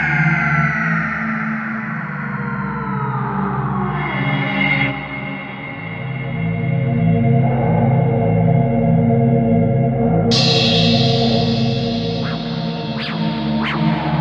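Dark electro track: several synth tones glide downward in pitch over a pulsing, rhythmic bass line. About ten seconds in, a bright, hissy high layer cuts in, and a few short high blips follow near the end.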